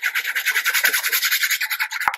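Fine-tipped glue bottle scratching rapidly back and forth across the back of a piece of patterned paper as glue is spread, at about ten strokes a second.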